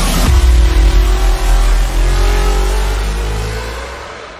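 Intro sound effect: a deep rumble with a slowly rising tone over it, like a cinematic riser, fading out near the end.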